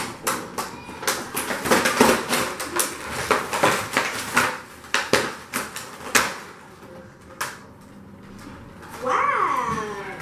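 Cardboard and plastic packaging being handled: a rapid run of rustles, scrapes and knocks as a cardboard box is opened and a boxed toy playset with a clear plastic tray is pulled out, easing off after about six seconds. Near the end a child's voice gives a drawn-out, wavering exclamation.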